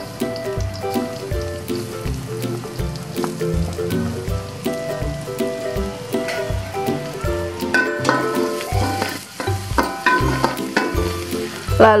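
Minced garlic sizzling as it is sautéed in hot oil in a wok. Background music with a steady beat plays over it.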